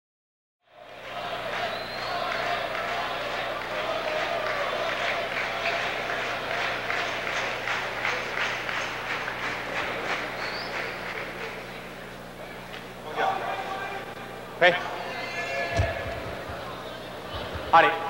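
Arena crowd applauding and talking over a steady low hum, easing off after about eleven seconds. Near the end a man calls out sharply twice.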